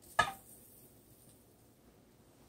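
A single sharp clink about a fifth of a second in, with a short ringing tone, as a ceramic bowl knocks against the rim of a frying pan while it is tipped to pour beaten eggs; then only faint room sound.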